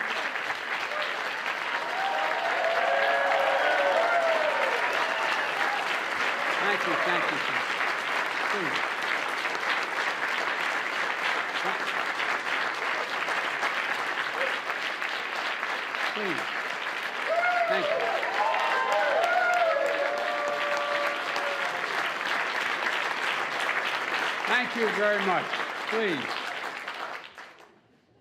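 Audience applauding steadily, with voices calling out over the clapping a few times. The applause dies away near the end.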